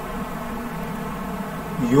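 A steady low buzzing hum through a pause in speech, with a man's voice coming in near the end.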